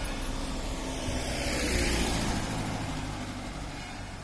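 A van and a car driving past close by on a paved road. Engine hum and tyre noise swell as the van goes by about two seconds in, then ease off as it pulls away.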